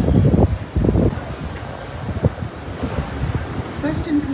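Wind buffeting the microphone on an open ship's deck: heavy, irregular low rumbling gusts for the first second or so, then a steadier, lower rush.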